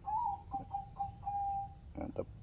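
A bird calling: a short rising note, a few brief notes, then one longer steady note.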